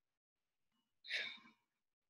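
A single short breath drawn in by the speaker, about a second in, set in otherwise dead silence.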